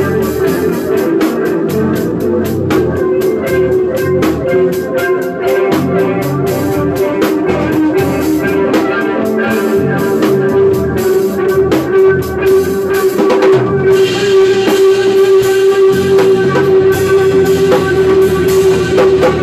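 Live instrumental rock jam: a drum kit played with busy cymbal and drum strokes under one long held note. About three-quarters through, the drumming thins and a brighter wash takes over.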